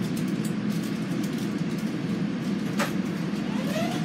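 Steady low rumble inside a moving Metro-North M7A electric commuter railcar. A brief falling squeal comes about three seconds in, and near the end a whine rises and then holds steady.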